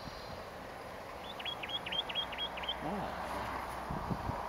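Western Rock Nuthatch (Sitta neumayer zarudnyi) calling: a quick series of six short, high notes, about four a second, each dropping in pitch.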